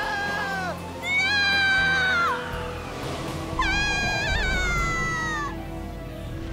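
Long, high-pitched screams from cartoon characters being sucked into a whirlwind, one after another; the last one wavers and then slowly slides down in pitch. Music plays underneath.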